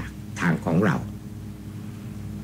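A man speaking Thai briefly in the first second, then a pause over a steady low hum.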